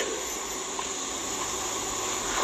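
Steady, even background hiss of room noise, with no other sound standing out.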